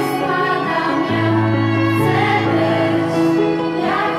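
A girls' choir singing, accompanied by a violin and an electric keyboard, the held chords changing about a second in and again about two seconds in.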